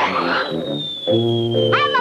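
Cartoon sound effects over background music: a short whoosh right at the start as the magic spell goes off, then a long whistle that slides slowly down in pitch, the classic falling-object effect for the pot dropping from the sky.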